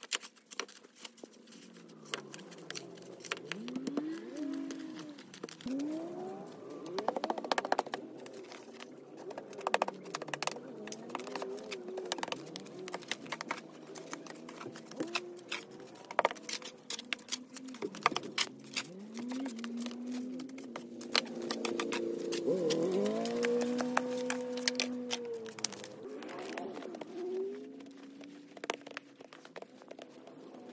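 A metal snow shovel scraping pavement and cutting into packed snow, with many short sharp scrapes and knocks. Low wavering pitched sounds rise and fall through it, loudest about two-thirds of the way in.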